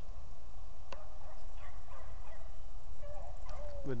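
Beagle pack baying faintly and intermittently while running a rabbit, over a steady low rumble.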